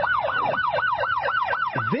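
Electronic police siren in yelp mode: a fast up-and-down whoop, about four sweeps a second, with a deeper downward swoop near the end.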